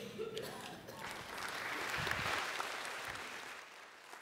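Audience applause, swelling for about a second and then fading away toward the end.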